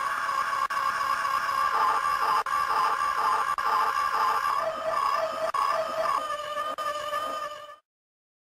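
Two women screaming: long, high-pitched overlapping screams that pulse and waver, then cut off abruptly near the end.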